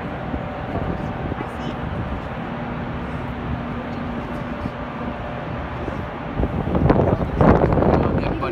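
Steady outdoor noise with wind on the microphone and faint voices in the background, the voices growing louder in the last second or so.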